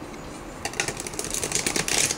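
A rapid run of light, papery clicks starting about half a second in, from tarot cards being handled or shuffled.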